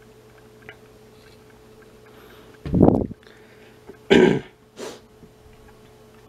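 A man clearing his throat about three seconds in, then coughing a second later and giving a short sniff. A faint steady hum runs underneath.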